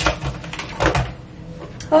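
Small objects knocked and set down on a bathroom counter: a sharp knock at the start, another just under a second later, and a fainter tap near the end.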